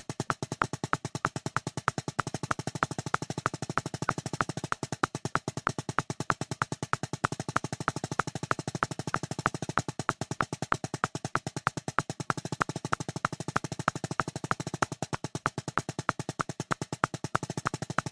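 Drumsticks playing a fast, even stream of single and double strokes on a drum, about ten strokes a second at 190 BPM, with regularly spaced louder accents.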